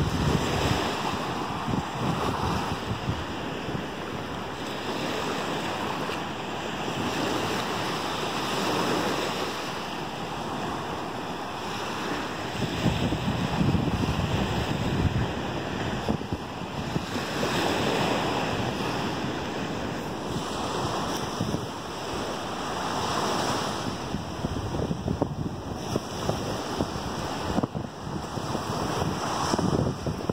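Small Gulf of Mexico waves breaking just offshore and washing up the sand, the surf swelling and fading every few seconds. Wind buffets the microphone in short gusts.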